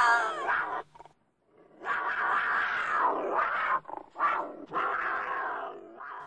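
A dog growling in rough, rasping spells of a second or two, after a sudden dead-silent gap about a second in.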